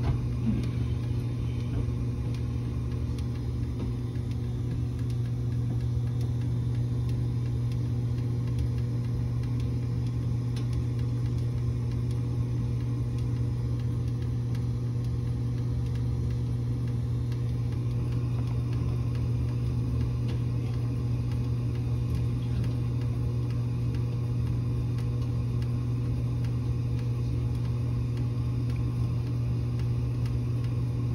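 Coleman Evcon gas furnace running steadily with its burner lit, a constant low hum with no change in pitch or level.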